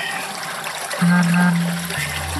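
Floodwater sloshing and trickling inside a flooded vehicle cab, under background music. A loud, steady low note holds from about halfway through.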